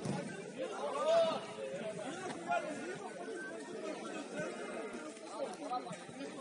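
Indistinct chatter: several voices talking and calling at once, none of it clear enough to make out.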